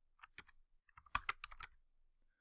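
Keystrokes on a computer keyboard: a few light, scattered taps, then a quicker run of about four louder ones a little past the middle.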